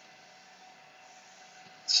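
Epson F2100 direct-to-garment printer running as its print head carriage sweeps across: a faint, steady mechanical hum with a constant tone.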